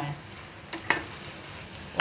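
Spatula stirring besan-coated arbi (colocasia) leaves frying in a steel kadhai: a steady sizzle, with two quick knocks of the spatula against the pan just before a second in.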